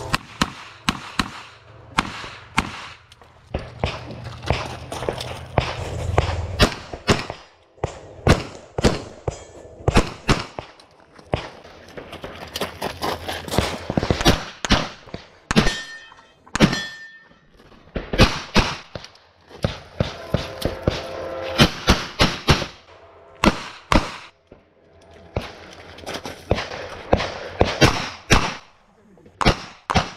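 Handgun shots fired in rapid strings, several shots a second, with short pauses between strings as the shooter moves through the stage.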